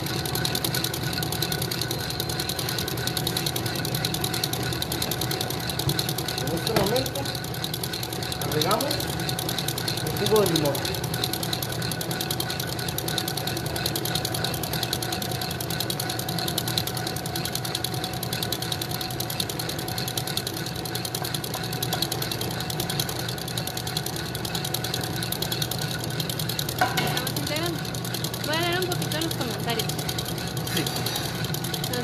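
Electric mixer motor running steadily, beating egg whites for a meringue frosting, with a constant hum.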